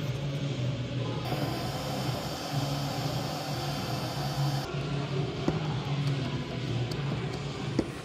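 Background music, with a heat gun's blower hissing for about three seconds from about a second in as it shrinks heat-shrink tubing onto a cable.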